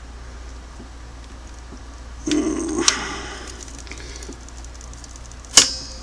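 Vise-grip locking pliers being worked onto a broken steel screw in a sewing machine's casting: a scraping metal rustle with a click about two and a half seconds in, then a single sharp metallic click near the end.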